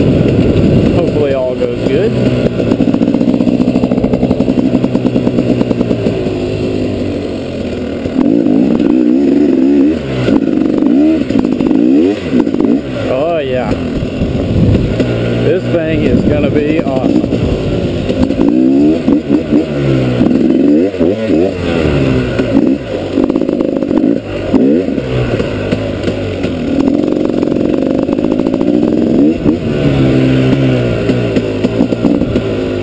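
Single-cylinder two-stroke engine of a 2012 KTM 250 XC-W enduro motorcycle being ridden, heard from on the bike. It revs up and down repeatedly as the throttle opens and closes, with brief drops in revs every few seconds.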